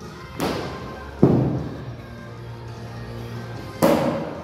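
Loaded barbell with bumper plates set down on the rubber gym floor between reps: three thuds, the loudest about a second in, each ringing on briefly, over background music.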